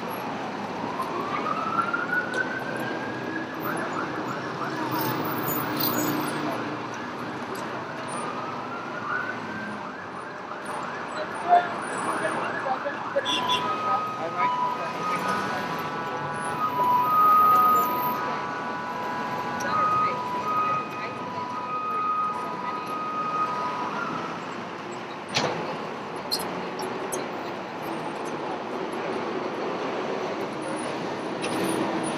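Emergency vehicle siren sounding over city street traffic noise. It wails upward and holds in the first few seconds, rises again about ten seconds in, then switches to a fast two-tone alternating pattern until about 24 seconds in. A single sharp knock follows shortly after.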